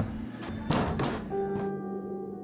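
Film soundtrack: a few sharp knocks and thuds in the first second and a half, then music comes in, a steady held chord of sustained notes.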